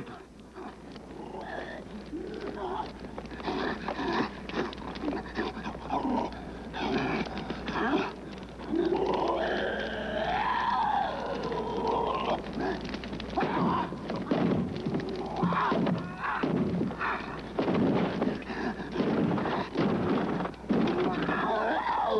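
Film sound effects of a dog-like animal snarling and barking, mixed with thuds. A long rising-and-falling cry sounds about halfway through.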